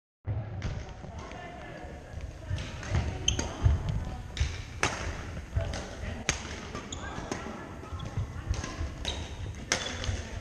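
Badminton rally: rackets strike the shuttlecock with several sharp cracks, roughly one every second or so, over indistinct voices in a large gym hall.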